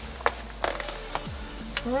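A zippered soft case holding a portable car jump starter being opened and its contents handled, with a few light clicks, over background music with a deep beat.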